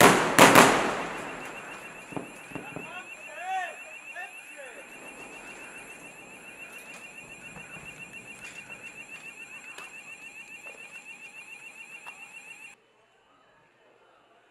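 Two loud bangs about half a second apart, each trailing off, then an electronic alarm beeping rapidly and steadily in a high tone that cuts off suddenly near the end.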